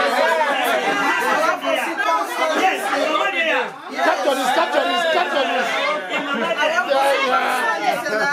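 Several people talking at once, a crowd's overlapping chatter with no single voice standing out, with a brief lull a little before halfway.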